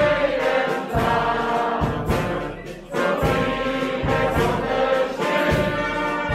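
Brass band of trumpets and trombones, with bass drum and cymbals, playing a tune over a regular bass-drum beat. The music dips briefly about halfway through, then comes back in.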